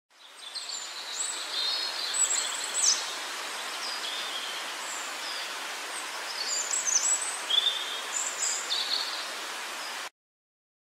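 Forest ambience: several songbirds chirping and whistling in short high phrases over a steady hiss. It fades in quickly at the start and cuts off abruptly at the end.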